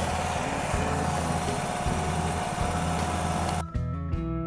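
Diesel semi truck engine idling steadily, a low even rumble that cuts off abruptly shortly before the end.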